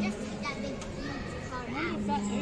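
Background chatter of several children's voices in a busy room, over a steady low hum.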